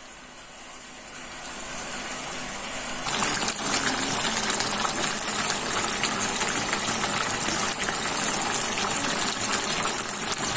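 Chicken kaldereta stew bubbling at a boil in a pan: a steady crackling, bubbling noise that builds over the first few seconds and jumps louder about three seconds in.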